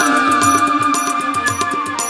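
Instrumental break in a live Bengali Baul folk song: a keyboard holds a steady note over a brisk drum beat of about four strokes a second, with no singing.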